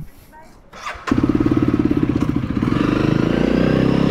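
Honda CRF300 single-cylinder motorcycle engine starting about a second in, then running and revving up a little as the bike pulls away.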